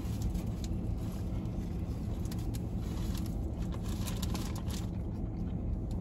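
Steady low hum of a car idling, heard from inside the cabin. Over it come a few faint clicks and rustles of chewing and of the paper sandwich wrapper.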